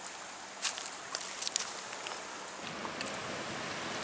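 Steady rush of shallow river water flowing over stones, released from the dam upstream, with a few light clicks and crackles about a second in.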